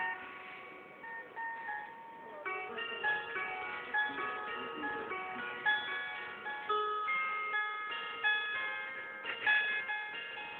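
Gusli, a Russian plucked box zither, played with a pick: bright, ringing plucked notes. A few quiet notes at first, then a steady run of notes from about two and a half seconds in, with a louder strum near the end.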